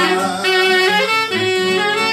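Clarinet playing an ornamented instrumental melody in a traditional Greek folk tune, over strummed acoustic guitar chords.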